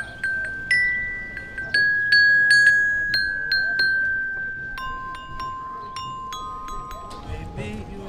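Glockenspiel with metal bars, struck one note at a time with a single mallet, picking out a loose melody; each note rings on clearly after the strike. A voice starts singing near the end.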